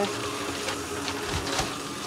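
Cold water running from a kitchen tap into a stainless steel sink, with a few soft crinkles of a plastic wrapper as a packaged corned beef is handled.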